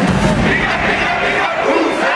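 A marching band's brass and drums stop about half a second in, leaving many voices shouting and cheering.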